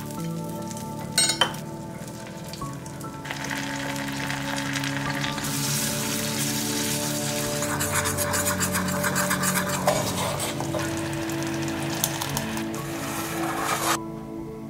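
Butter and brown sugar sizzling and bubbling in a pan while they are stirred into a thick syrup, with soft background music underneath. A couple of sharp clinks come about a second in, and the sizzling grows louder from about three seconds on.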